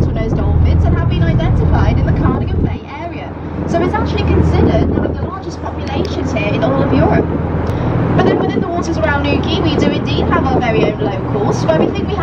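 Tour boat's engine running with a steady low hum, dropping away briefly about three seconds in, under a voice talking.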